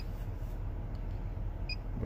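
Two short, high beeps about a second and a half apart from a handheld OBD2 scan tool's built-in speaker as its keypad buttons are pressed, over a low steady hum inside the car.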